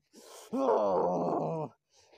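A short breathy gasp, then a loud, drawn-out groan of about a second from a person acting pain as the prayer beads are held out against them.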